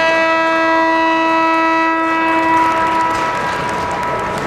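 Ice-hockey arena horn sounding one long steady blast of about three seconds, cutting in suddenly over the crowd noise, typical of the horn that ends a period.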